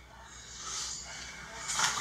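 Faint, indistinct voices over a low steady hum.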